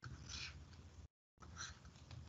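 Two faint, brief scratches of a stylus writing on a tablet screen, with near silence around them.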